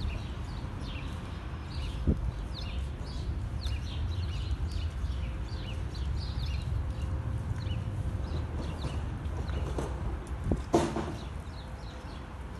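Small birds chirping over a steady low rumble. A horse's hoof knocks on the trailer floor, lightly about two seconds in and louder once near the end.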